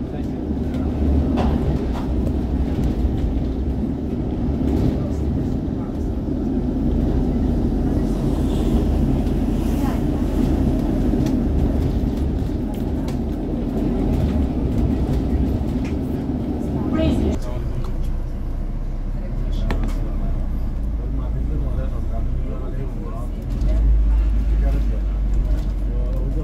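Cabin noise of a moving London double-decker bus: steady engine and road rumble. The engine's drone cuts off suddenly about two-thirds of the way in, and a deeper rumble swells near the end.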